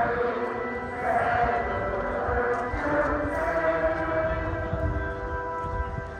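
Slow sacred hymn music with long held chords, the notes shifting every second or two.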